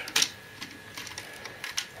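Plastic cab of a 1987 M.A.S.K. Wildcat toy truck being turned on its pivot by hand: one sharp click just after the start, then a few fainter plastic clicks.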